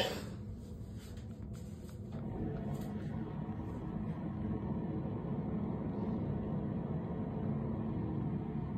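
A low, steady rumble of background noise, a little louder from about two seconds in.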